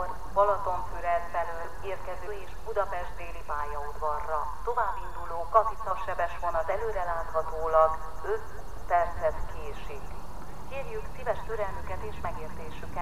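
Distant, unintelligible speech: a voice talking in short phrases throughout. A faint low steady hum comes in near the end.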